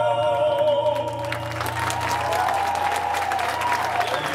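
Male gospel quartet holding the song's final sung chord with vibrato, cutting off about a second in. Audience applause takes over, with a low sustained tone underneath.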